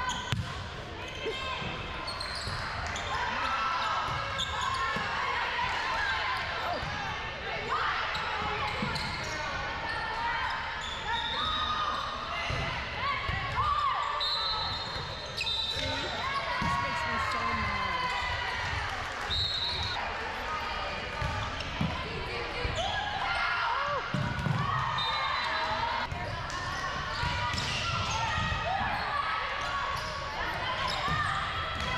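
Indoor volleyball rally: the ball struck and landing again and again, sneakers squeaking on the hardwood floor, and players and spectators calling out throughout, all echoing in the gym.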